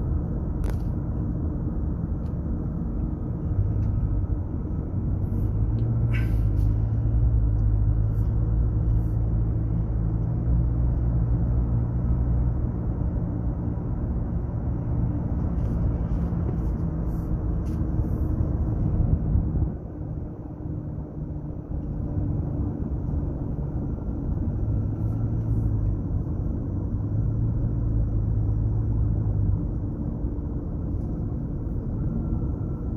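Car cabin noise while driving on smooth tarmac: a steady low rumble of engine and tyres. It drops for a few seconds about twenty seconds in, then picks up again.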